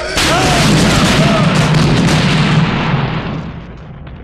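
Film sound effect of a jeep crashing down a cliff and exploding: a sudden loud boom just after the start, then a heavy rumbling roar that dies away over the last second.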